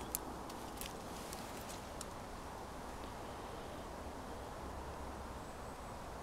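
Quiet outdoor background: a low steady rumble, with a few light clicks in the first two seconds as the phone is handled among the plants.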